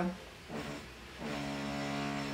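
A neighbour's electric drill, part of renovation work in the apartment building, heard through the walls as a steady, unvarying motor whine that starts a little past halfway through.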